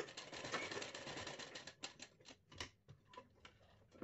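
Straight-stitch sewing machine stitching through a paper pattern and cloth: a soft run of quick needle clicks for about the first second and a half, slowing to scattered single ticks.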